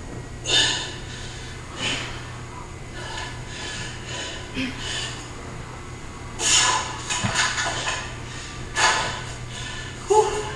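A woman breathing hard through a set of dumbbell exercise, with short forceful breaths out every second or two and a longer run of them about two-thirds of the way through.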